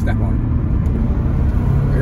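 Turbocharged car engine running under way, heard from inside the cabin with road rumble; the engine note rises slightly near the end.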